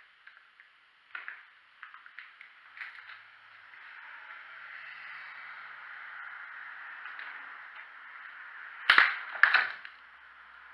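Scattered light clicks and knocks, then a steady hiss, then two loud sharp knocks about half a second apart near the end: handling and footstep noises in a debris-strewn room.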